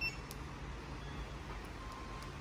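A remote engine-start system's short, high electronic beep as the key fob button is pressed, then a fainter, lower beep about a second and a half in, over a low steady background.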